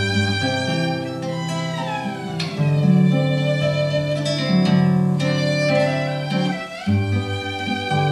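Instrumental duet of violin and guitar: the violin plays a slow, sustained melody over the guitar's accompaniment, with a downward slide between notes about two seconds in.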